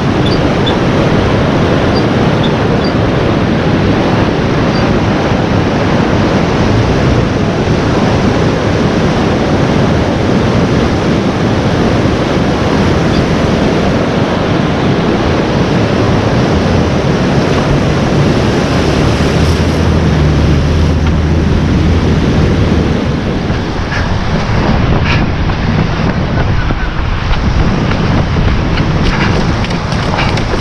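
Wind buffeting the microphone over the steady wash of small breaking surf on a beach. A few sharp handling knocks come near the end.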